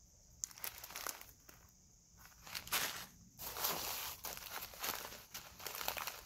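Cellophane bags of loose-leaf tea crinkling and rustling as they are handled, in irregular short bursts.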